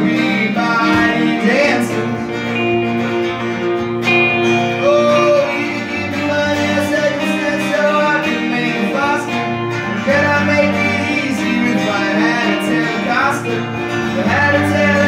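Live instrumental break: an acoustic guitar strummed steadily under an electric guitar playing a lead line with bent notes.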